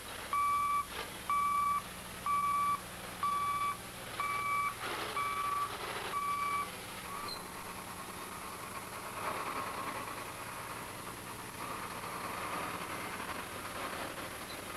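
Heavy-equipment back-up alarm beeping about once a second, seven beeps at one steady pitch, signalling that the machine is reversing. After the beeps stop, a heavy vehicle's engine runs steadily.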